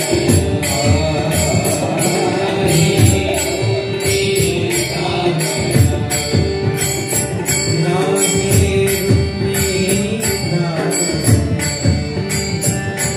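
Devotional bhajan singing of a Marathi abhang: a voice sings over a held drone, kept in time by a steady beat of small metal hand cymbals and a drum.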